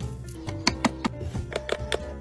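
Background music with steady sustained tones. A few sharp, irregularly spaced knocks of a chef's knife striking a wooden cutting board come through the music, a cluster of three about two-thirds of a second in and two more near the end.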